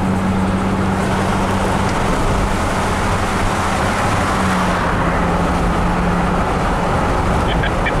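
Road noise inside a moving car's cabin: a steady rush of tyre and wind noise with a low steady hum that fades out about three-quarters of the way through.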